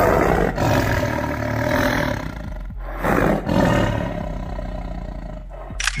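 Tiger snarling and roaring in rough bursts: a long one in the first two seconds, another about three seconds in, and a weaker one near the end.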